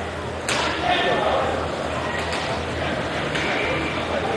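Indoor roller hockey game: one sharp knock about half a second in, typical of a stick or puck strike, over the rink's steady background noise.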